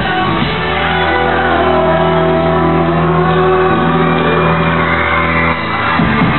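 Live rock band on stage playing loudly, holding a long sustained chord with drums and cymbals, with shouting over it; the low held notes cut off suddenly near the end.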